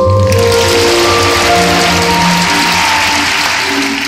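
Figure-skating program music playing over an arena's speakers, with the crowd applauding for about three seconds, starting just after the beginning and dying away near the end.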